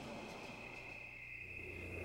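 Faint steady high-pitched tone over a low hum: the background noise of an old audio tape recording, just before a voice on it begins.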